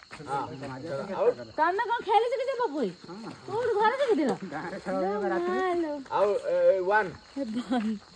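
Several people's voices calling out and talking in bursts, some long and drawn out, with a steady high insect trill, typical of crickets, running behind them.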